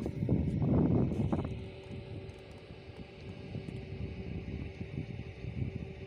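Outdoor wind rumbling and buffeting the microphone, with a faint steady hum underneath; a louder passage at the start stops about a second and a half in.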